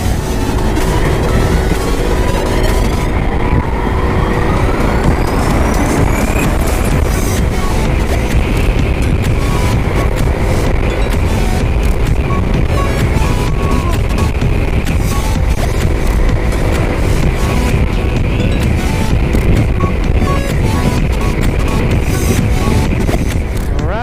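Wind and road rush from riding a Yamaha Mio i 125 scooter at speed on a highway, with its single-cylinder engine running underneath and a tone rising about three to six seconds in. Background music plays over it.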